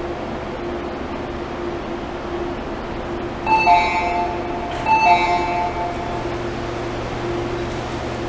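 A station door chime sounds twice, about a second and a half apart, each time a short multi-note tone. It signals that the train and platform screen doors are about to open. A steady hum from the stopped train and station runs underneath.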